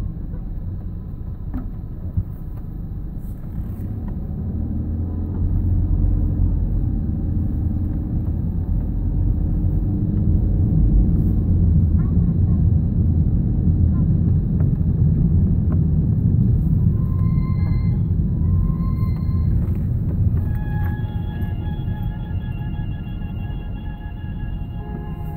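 Steady low rumble of a car's engine and tyres heard from inside the cabin while driving slowly, swelling through the middle. Near the end, music with held tones comes in over it.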